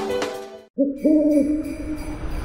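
Jingle music fading out, a brief silence, then owl hooting: two short hoots and a longer held one.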